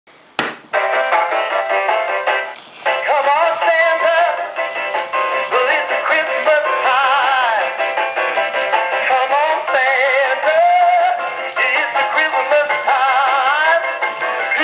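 Trim A Home Twisting Santa animated figure playing a Christmas song through its small built-in speaker: a music track with a male singing voice, thin with little bass. A click about half a second in, then the song starts.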